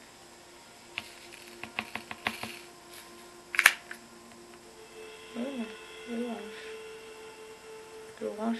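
Small clear plastic diamond-painting drill containers being handled: a run of light plastic clicks, then one sharp snap about three and a half seconds in. A short murmur twice near the end.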